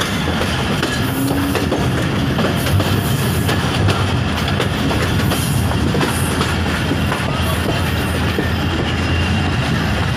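Passenger train coaches rolling along the track at low speed, heard from aboard the moving train: a steady rumble of wheels on rails with frequent short clicks and clatter.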